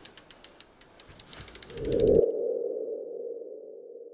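Logo-animation sound effect: a rapid run of ticking clicks that speeds up, then gives way about two seconds in to a humming tone that swells and slowly fades.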